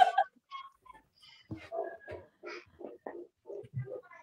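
Soft laughter: a run of short, quiet bursts of chuckling, starting about a second and a half in.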